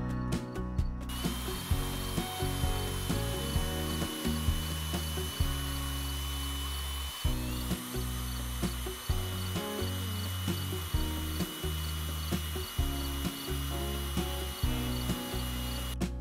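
Cordless drill running in long steady runs with a high motor whine, stopping briefly about seven seconds in and winding back up, over background music.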